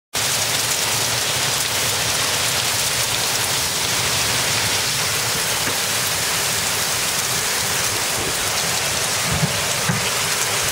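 Heavy rain mixed with hail falling hard, a dense steady hiss of drops and hailstones striking surfaces, driven by the jugo wind.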